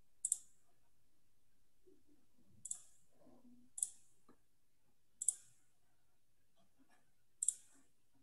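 Computer mouse clicking: five sharp clicks, each a quick double snap, spaced one to two seconds apart over quiet room tone.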